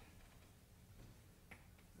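Near silence: room tone in a pause in speech, with one faint short click about a second and a half in.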